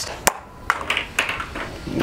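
Nerf Ace spring-powered dart blaster firing with a sharp click about a quarter second in, then several lighter knocks and taps as a foam dart hits and knocks over two small targets.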